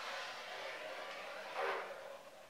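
Whiteboard marker drawn in one long stroke along a ruler: a steady rubbing of the felt tip on the board, a little louder near the end.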